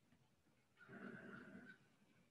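Near silence: faint room tone, broken about a second in by a faint sound lasting about a second.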